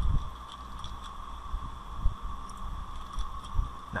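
Steady electrical hum and microphone noise, with a few faint clicks of keyboard keys and a mouse as code is typed and a window is switched.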